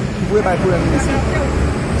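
Voices talking over a steady low background rumble.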